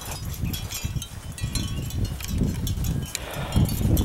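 Low, gusty rumble of wind and handling noise on a handheld camcorder's microphone while it is carried, with scattered light clicks and clinks.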